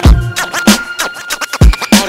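Hip hop beat with a kick drum and turntable scratching, a quick run of scratches in the middle.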